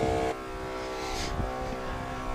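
Maxi Trac 300 LPM portable 12-volt air compressor running with a steady hum. About a third of a second in it drops sharply in level, leaving a quieter steady hum.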